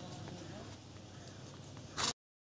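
Low steady background hiss of a voice recording between words, with a few faint ticks and one brief louder sound near the end.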